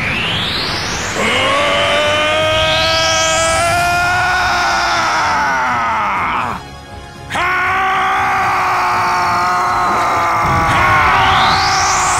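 Two long, drawn-out battle screams, each held for about five seconds with a short break between them. They sound over a music soundtrack, and rising whoosh sound effects come near the start, a few seconds in and near the end.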